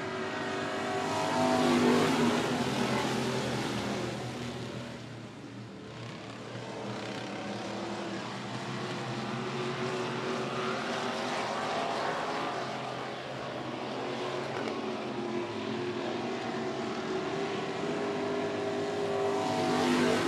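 A field of dirt-track stock cars accelerating on a green-flag restart, several engines running hard at once. The engine sound swells to its loudest about two seconds in, eases briefly, then holds steady as the pack races on.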